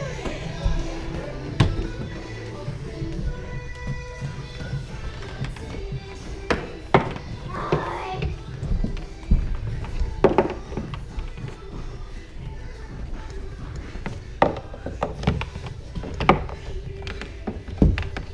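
Irregular sharp knocks and thuds of hands and feet striking a wooden climbing board and its handholds, about nine in all, over background music.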